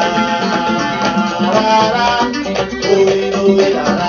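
Instrumental passage of a song played from a vinyl record on a turntable through a loudspeaker: several pitched instruments over a steady shaker-like percussion rhythm, with no singing.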